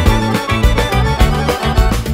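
Macedonian folk band playing an instrumental passage: accordion and electric bass over a brisk, steady beat.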